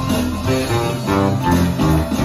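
Small rock band playing live with no singing: acoustic guitar strumming over electric bass, drums and keyboard.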